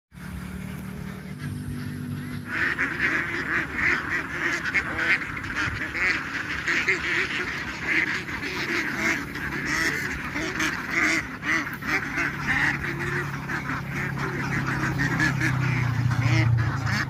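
A large flock of domestic ducks quacking all at once: a dense, unbroken chorus of many overlapping calls, starting about two and a half seconds in.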